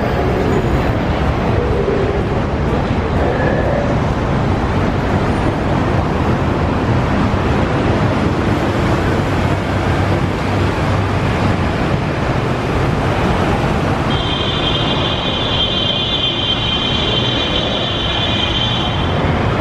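Steady rumble of vehicle and road-traffic noise, strongest in the low end, with no clear single event. About fourteen seconds in, a high, steady whine of several close pitches comes in over it.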